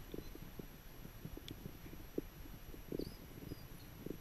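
Faint, irregular low knocks and rumbling from a moving camera being jostled, with a few faint high chirps about three seconds in.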